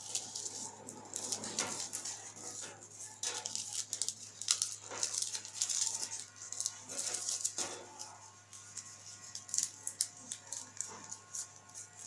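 Paper rustling and crinkling in irregular bursts as hands fold and crease small cut pieces of green paper.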